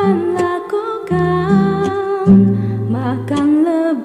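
Pop ballad: a woman singing softly with long held notes over a karaoke backing track of acoustic guitar and bass.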